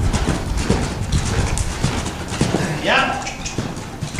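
Hoofbeats of a ridden horse on the soft dirt footing of an arena.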